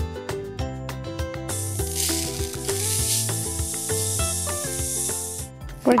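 Pepper mill grinding over background music: a steady hiss from about a second and a half in, stopping shortly before the end.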